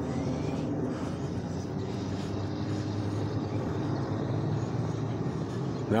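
Steady low hum of a vehicle engine running, over street background noise.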